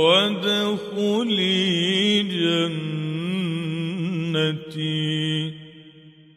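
A male reciter chanting the Quran in mujawwad style: long, drawn-out melodic phrases with a wavering, ornamented pitch. The voice stops about five and a half seconds in and fades out in a reverberant echo.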